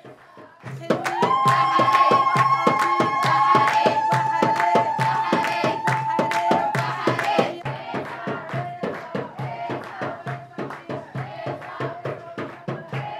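Women ululating (zaghareet) in long, high, held cries that start about a second in and die away around seven seconds, over steady rhythmic hand clapping: the celebration cry that greets a marriage contract being sealed.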